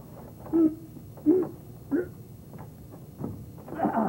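A man's short straining grunts, three of them spaced about two-thirds of a second apart, as he heaves on a stuck wooden shed door, then a louder, rougher burst of sound near the end.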